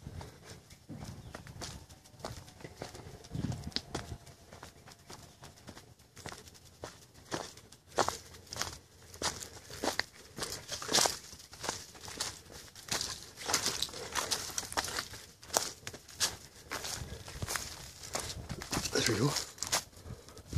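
Footsteps crunching through dry leaf litter and brush, with twigs and branches rustling and snapping as someone pushes through. The crunches come irregularly, a few a second.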